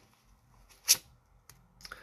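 Oracle cards being handled: one brief, sharp swish of a card pulled from the deck about a second in, with a few faint card ticks near the end.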